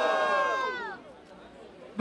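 Crowd of spectators shouting a long 'ohh' together in reaction to a punchline; the held shout slides down in pitch and dies away about a second in, leaving low crowd murmur.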